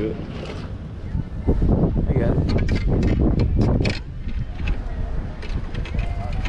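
Wind buffeting the microphone, a steady low rumble, with indistinct voices in between.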